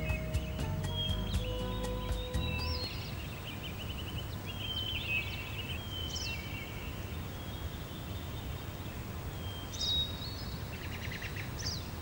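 Outdoor ambience with scattered birds chirping: short whistled notes and a trill near the end, over a low steady background noise. A few held music notes fade out in the first two seconds.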